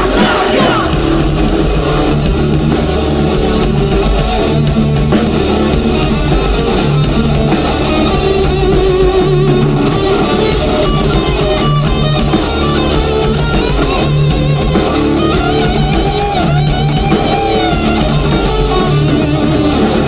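A live rock/metal band playing loud: electric guitars, bass and drums with a steady beat.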